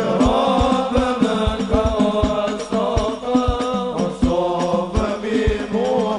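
Live sholawat music: a male lead voice sings a long, ornamented melody over a steady pattern of deep hadroh frame-drum strokes.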